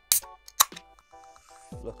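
Aluminium beer can's ring-pull tab opened: two sharp cracks about half a second apart, the second louder, followed by a faint fizzing hiss of escaping gas.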